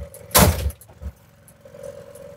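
A single heavy thump in the van's cabin about half a second in, followed by a faint steady hum.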